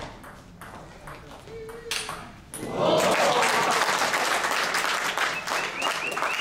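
Table tennis rally: the ball clicks sharply off bats and table a few times over about two and a half seconds. Then spectators applaud loudly as the point ends.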